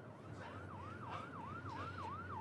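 Emergency vehicle siren in a fast yelp, its tone sweeping up and down about four times a second, faint and growing slightly louder as it approaches.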